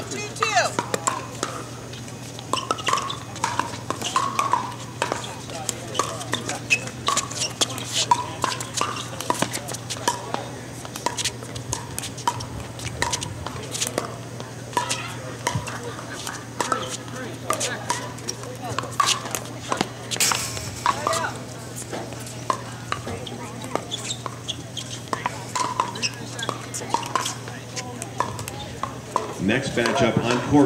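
Pickleballs struck by paddles on this and nearby courts: many sharp pops at irregular intervals, over background chatter and a steady low hum.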